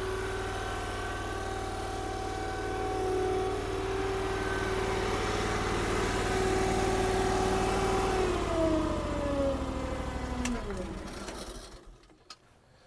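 Mini skid steer engine running steadily, then about eight seconds in its pitch drops away as it winds down and stops near the end, with a single click partway through the run-down.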